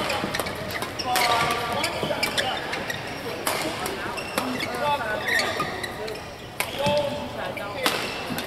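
Badminton rally: rackets striking a shuttlecock with sharp cracks every few seconds, with shoes squeaking on the court floor. Voices carry through the hall.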